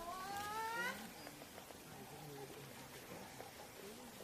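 A short, high-pitched cry that glides upward through the first second, then only faint background sounds.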